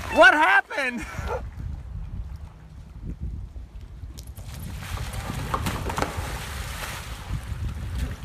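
A child's high, wavering squeal for about a second at the start, then wind rumbling on the microphone, and about four seconds in a splashing wash of water as a stand-up paddleboarder falls off the board into the river.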